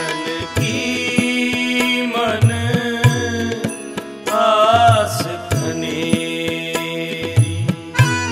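Sikh shabad kirtan: a male voice singing over sustained harmonium chords, with tabla accompaniment whose bass drum strokes glide in pitch.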